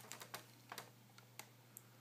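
Near silence: a few faint, irregularly spaced small clicks over a steady low hum.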